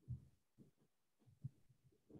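Near silence: room tone over a computer microphone, with a few faint, short low thumps.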